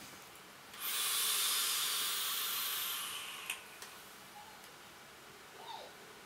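An e-cigarette with a sub-ohm coil (0.25 ohm, 39 W) being drawn on. About a second in, a steady hiss of air and vapour starts; it lasts about two and a half seconds and then stops, followed shortly by a single soft tick.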